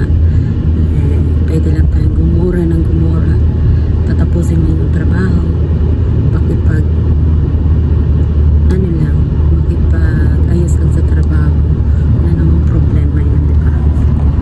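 Steady low rumble of a moving car heard from inside the cabin, with a woman's voice talking at times over it.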